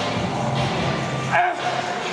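Background music playing, with a man's strained yell about one and a half seconds in that rises and then holds, the sound of a lifter pushing through a hard rep on a leg machine.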